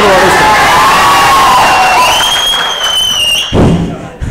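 Large indoor crowd cheering and shouting, with a long, shrill whistle rising over the noise about halfway through. It dies down with a thump shortly before the end.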